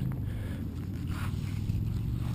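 Faint handling noise over a steady low hum: soft rustling and light scraping as the crashed tricopter frame is turned over in the hand.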